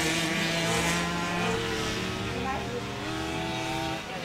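Several small youth motorcycles running together in a grasstrack race, a steady layered engine sound that slowly shifts in pitch and eases off a little as the bikes move away.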